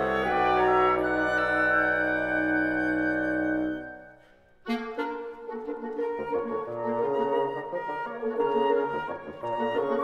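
Wind quintet (flute, oboe, clarinet, bassoon and horn) playing: a held chord fades away about four seconds in, followed by a brief pause. The ensemble then comes back in with a sharp attack and carries on in busy, short notes.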